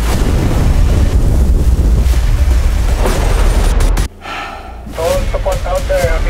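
A deep, loud rumble over a wash of water noise lasts about four seconds and cuts off suddenly. It plays under underwater footage of the ocean and is part of a film's sound design. Near the end, voices come in.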